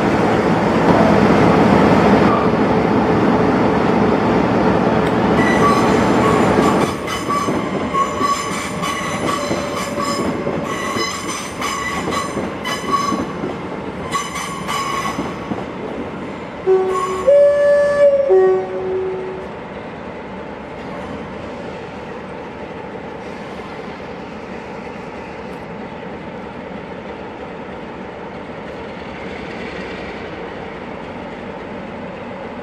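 A class 47 diesel locomotive's Sulzer V12 engine running loudly close by for about the first seven seconds. Then come several seconds of intermittent high-pitched metallic squealing from the train on the curved track. A two-tone train horn sounds about seventeen seconds in, followed by a steadier, quieter rumble.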